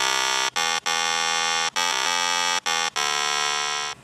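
Ship's horn sounding: a loud, steady, rich tone broken into about six blasts of uneven length by brief gaps.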